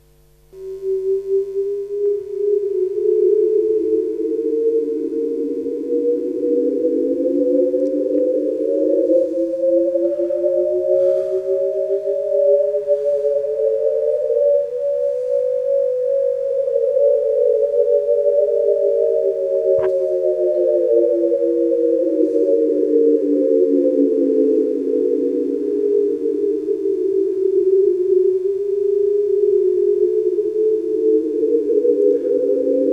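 Generative electronic drone sonifying a bifurcation diagram: a single steady tone comes in about half a second in, then splits into several close tones that beat against each other and spread into a wide smeared band, narrow back together about halfway, and spread out again. A single sharp click about two-thirds of the way in.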